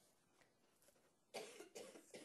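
Near-silent room tone, then a faint cough about a second and a half in.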